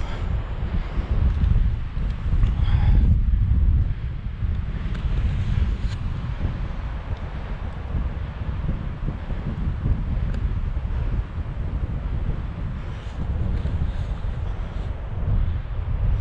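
Wind buffeting the microphone: a loud, gusting low rumble that rises and falls.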